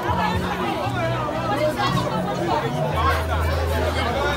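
A crowd of people talking over one another, with music playing underneath whose low bass notes step from pitch to pitch.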